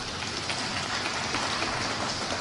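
Audience applauding in a large hall: a steady patter of many hands that swells slightly.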